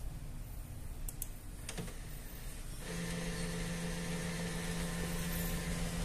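A click, then about three seconds in the HP Color LaserJet Pro MFP M177fw starts its scan run: a steady mechanical hum from the document feeder and scanner motor as it begins pulling the stacked pages through.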